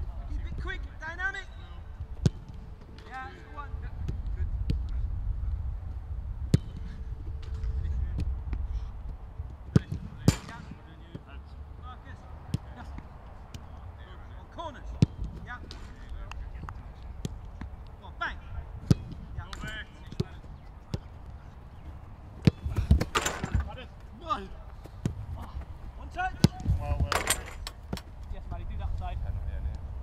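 Footballs being kicked in shooting practice: sharp single thuds every few seconds, a few much louder than the rest. Distant shouts and voices of players come in now and then.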